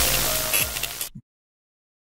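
Electronic logo-sting music from a sports broadcast bumper, with a bright whooshing sweep. It cuts off abruptly a little over a second in.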